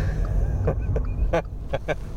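A man laughing in a few short bursts inside the cabin of a VW e-up! electric car, over the steady low rumble of tyre and road noise, with no engine sound.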